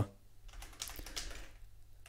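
A short run of quiet keystrokes on a computer keyboard as a word is typed.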